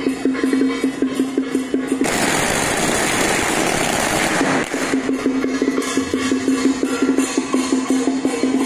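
A string of firecrackers crackling in a dense, continuous stream for about two and a half seconds, starting about two seconds in. Before and after it, rhythmic music with a fast, even percussive beat over a steady low tone.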